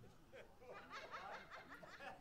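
Faint chuckling and soft laughter from an audience, a quick run of short laughs that picks up about two-thirds of a second in.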